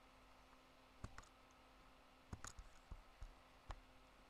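Computer mouse clicking as checkboxes are ticked and unticked on screen: about eight short, sharp clicks, some singly and some in quick pairs, starting about a second in, over a faint steady hum in an otherwise near-silent room.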